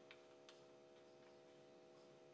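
Near silence: a faint steady hum underneath, with a few faint clicks in the first half-second as the plastic screw-in charging fuse holder on the inverter's back panel is twisted open by hand.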